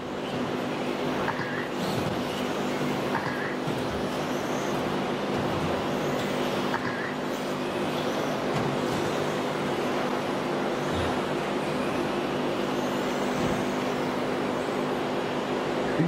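Electric radio-controlled race cars running laps on an indoor track: a steady, even noise of motors and tyres with a constant hum under it and faint whines rising and falling.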